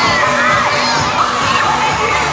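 Many children shouting and cheering at once, high voices overlapping with no break.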